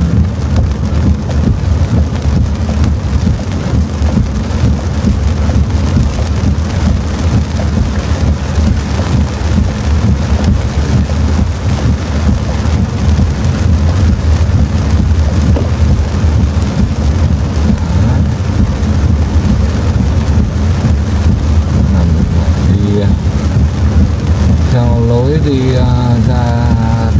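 Heavy rain drumming on a car's roof and windshield, heard from inside the cabin, with tyre and engine noise from driving on a flooded road underneath. It is loud and steady throughout.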